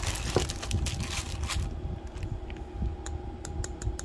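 Clear plastic bag crinkling as a plastic bangle is pulled out of it, densest in the first second and a half, followed by a few light scattered clicks and rustles as the bangle is handled.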